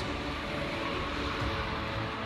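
Road traffic passing, cars and a motorcycle, as a steady noise with background music underneath.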